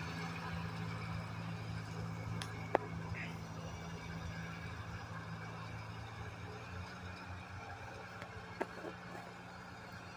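1953 Ford Golden Jubilee tractor's four-cylinder engine running steadily, a low drone that slowly fades as the tractor pulls away, with a single sharp click about three seconds in.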